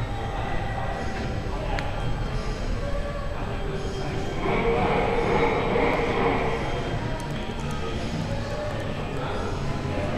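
Steady background din of a large indoor hall: a low, continuous hum with indistinct voices in the distance, swelling briefly about halfway through.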